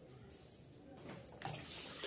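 Thin curry gravy in a steel kadai starting to bubble and spit on the stove as the added water comes to the boil. It is faint at first, then a louder, hissy spluttering rises about one and a half seconds in.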